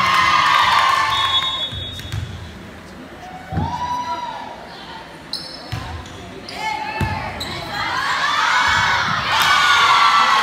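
A volleyball rally in a gymnasium. The ball is struck several times, making sharp, echoing thumps, amid short shouts from players. Crowd voices and cheering are loud at the start, quieter through the middle, and build again over the last two seconds.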